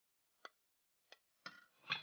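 A metal slotted serving spoon clinking lightly against a china plate and a steel pot as food is served: four short, soft clinks, spread over two seconds.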